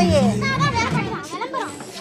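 Young children's voices chattering as they play, over background music.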